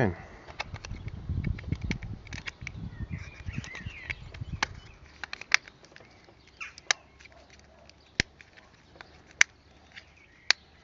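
Hands working the plastic casing of a DJI Spark drone battery: rubbing and fumbling handling noise for the first few seconds, then a handful of sharp plastic clicks about a second apart as the top cover is pressed back into place.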